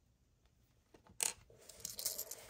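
Quiet at first, then about a second in a single sharp metallic clink as a small metal piece of the precision screwdriver kit is put down on the table. A short scraping follows as the hard drive is shifted on the tabletop.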